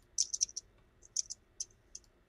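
Keystrokes on a computer keyboard: a quick run of taps in the first half second, then a few scattered single clicks.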